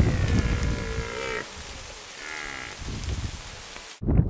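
Red deer stag roaring: a drawn-out call of about a second and a half that wavers at its end, then a second, fainter call about two seconds in.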